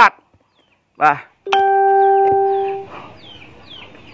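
A single steady pitched tone starts suddenly about a second and a half in, holds for just over a second while fading slightly, then stops. Faint short descending bird chirps repeat behind it.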